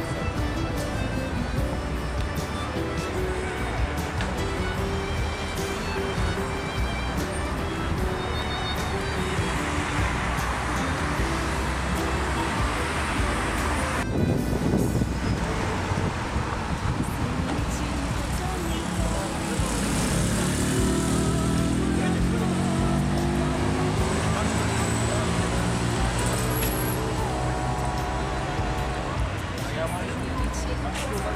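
Busy city street traffic: cars and other road vehicles running past, mixed with music and indistinct voices. The sound changes abruptly about halfway through, and a deeper engine sound joins in the second half.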